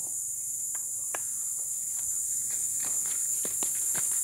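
A steady high-pitched chorus of insects, with a few footsteps on a dirt trail as clicks scattered through it.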